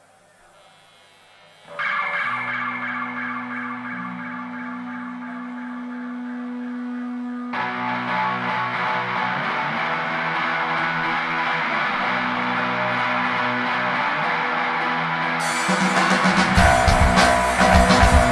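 A live rock band starting a song on effects-laden electric guitars. After a near-quiet second or two, a sustained guitar chord rings out. A second guitar layer joins about halfway through, and the drums and full band come in near the end, getting louder.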